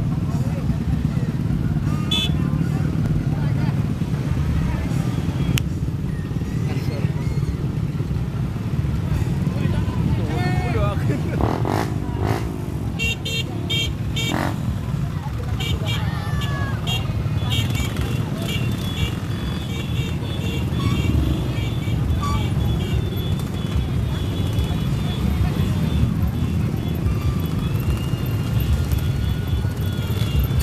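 Many small motorcycles and scooters running at low speed together in a convoy, a steady low engine drone, with voices. From about 13 seconds in, rapid high-pitched beeping repeats over the engines.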